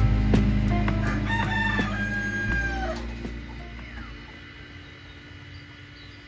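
A rooster crows once, a long held call about a second in that drops off at its end, over background music with a steady beat that fades out during the first few seconds.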